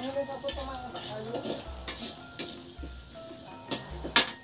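A spatula stirring and scraping food in a wok as it fries and sizzles, with repeated scrapes. Background music with a slow, low beat plays under it.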